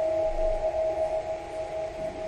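Brushless hub motor of a Meepo electric skateboard, driven by a sine-wave controller, running in high-speed mode with its wheels spinning: a steady, even whine with no change in pitch.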